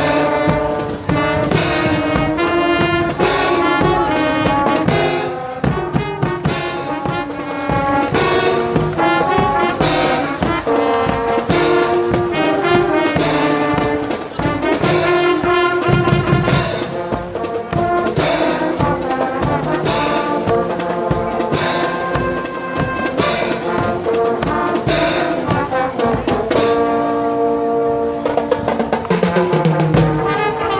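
Fanfarra marching brass band playing: trumpets and trombones carrying the tune over bass drum, snare drums and crash cymbals struck on a steady beat.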